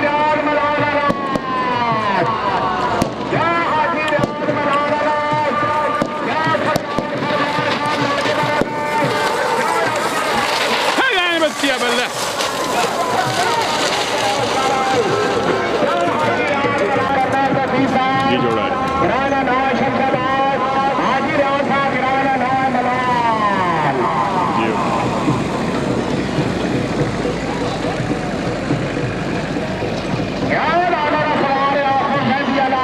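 Race commentator's voice over a loudspeaker, calling in long drawn-out, sliding tones over the noise of a crowd.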